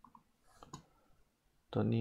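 A few faint computer mouse clicks about half a second in, then a man's voice starts near the end.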